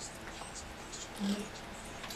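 Quiet room tone of a small radio studio: a faint steady hiss, with one brief low hum a little past the middle.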